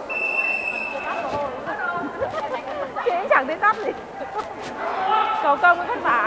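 A referee's whistle blown once, a steady tone of about a second, at the start, over voices of players and spectators talking and calling. Two faint sharp knocks come a little past the middle.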